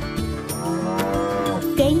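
A cow mooing once, one long call whose pitch rises slightly and then drops away, over the backing music of a children's song.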